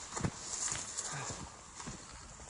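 A few scattered knocks and some rustling as people walk and handle plastic seedling trays.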